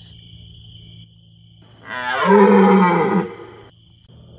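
One loud, low-pitched creature roar, about a second and a half long, starting about two seconds in: the unseen monster's cry. A steady chirring of crickets runs underneath.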